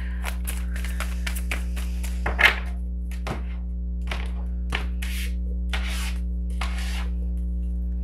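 A deck of tarot cards being shuffled and handled: a run of quick card clicks, then several longer swishes of cards sliding against each other, over steady background music.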